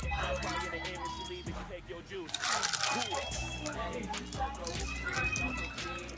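Quiet voices talking over faint music.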